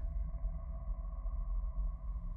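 Steady ambient drone of a horror film score: a low rumble under a few sustained, unchanging high tones.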